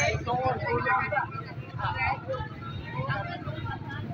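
Several people talking over a steady low engine rumble of passing vehicles.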